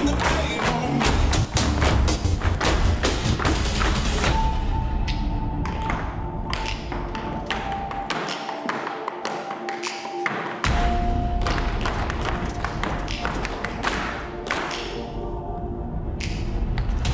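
Tap shoes striking raised dance platforms in quick, dense rhythms, with a recorded music track underneath whose deep bass drops out for a couple of seconds just past the middle.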